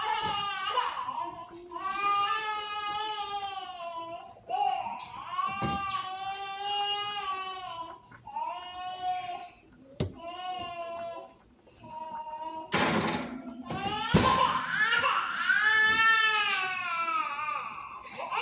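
Infant crying: a run of long, high-pitched wailing cries with short breaks for breath, from a baby who is teething and unwell. A single sharp click comes about ten seconds in.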